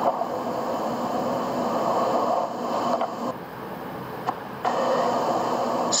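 Steady background noise with no distinct events, a continuous hiss or whoosh that thins briefly a little past halfway.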